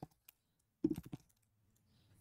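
Computer keyboard keystrokes: a single click at the start, then a quick cluster of a few keystrokes about a second in.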